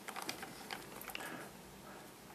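Plastic 3x3 Rubik's cube being turned by hand: faint clicks as the layers rotate, a few in the first second or so.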